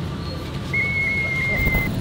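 A single high, steady whistle-like tone held for about a second, starting a little before the middle, over a low background hum.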